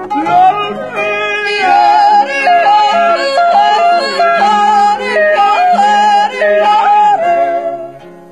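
Yodelers singing a yodel with sharp leaps between notes, over a plucked-string accompaniment; the singing eases off just before the end.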